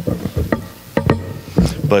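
Handling noise from a handheld directional microphone: a few sharp clicks and a low thump as it is gripped and moved close to the mouth, with brief fragments of a man's voice.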